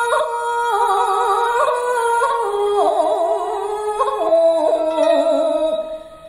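Japanese shigin poetry chanting: a single voice holding long notes with a wide, slow vibrato, stepping down to lower notes in the second half.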